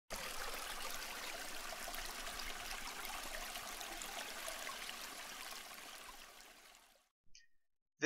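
Running water, a steady rushing trickle like a stream, fading out over about the last two seconds. A brief faint high sound follows just before the end.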